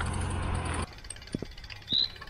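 Road bike rolling over cobblestones, a dense rattling rumble that cuts off abruptly just under a second in, leaving quiet outdoor air with a few faint clicks and a short knock near the end.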